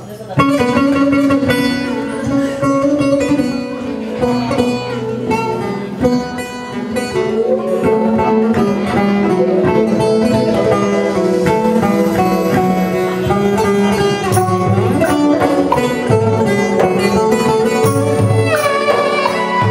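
Live folk-style ensemble music starting sharply about a third of a second in: a bağlama (long-necked Turkish lute) plucked over keyboard, with a violin bowing.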